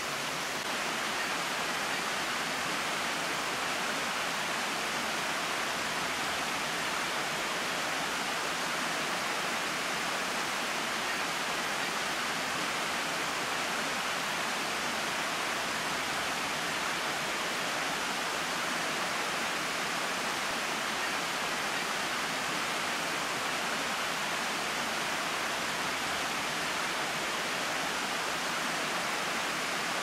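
Small waterfall cascading over stepped rock ledges into a shallow creek: a steady, even rush of water.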